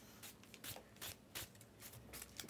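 Faint rustling and a few light clicks of trading cards and packs being handled.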